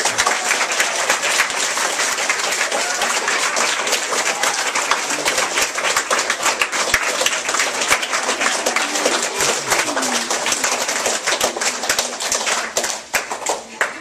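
A crowd of children and adults applauding: many hands clapping fast and unevenly, with voices calling out through it, thinning out near the end.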